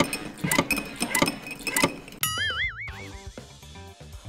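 Background music with a quick run of sharp clicks over the first two seconds. About two seconds in, a wobbling, warbling cartoon sound effect plays and fades away within about a second.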